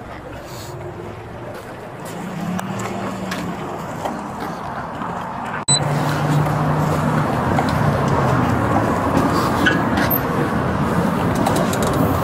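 Outdoor vehicle and traffic noise with a low steady hum, picked up on a police body-worn camera while walking across a parking lot. The sound drops out for an instant a little past halfway and comes back louder.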